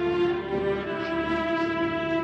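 Orchestral film score: bowed strings playing slow, long-held notes that move from one pitch to the next.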